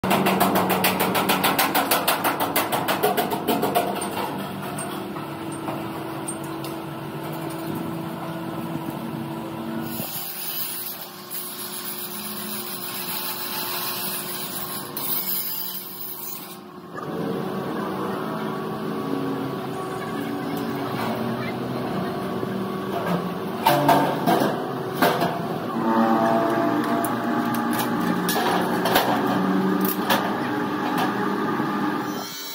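Steel fabrication noise in a metal workshop. The first few seconds are rapid, even knocking. For several seconds in the middle an angle grinder grinds a steel frame with a hissing sound that cuts off suddenly. Near the end come more sharp metal knocks.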